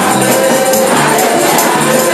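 Live gospel praise music: a choir of women singing together through microphones over a band, with a repeating bass line and a steady beat of shaken percussion.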